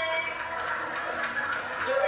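Voices with music mixed in beneath them. No words can be made out.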